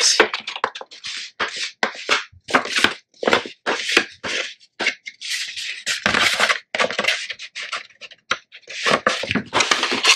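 An ink pad swiped along the edges of a sheet of patterned scrapbook paper to ink it: a quick run of short, scratchy rubbing strokes, two or three a second, with a few brief pauses.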